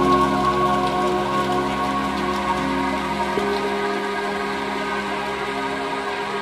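Ambient meditation music: sustained synthesizer pad chords with a steady high tone near 963 Hz, over a constant hiss. A new, higher note enters about halfway through.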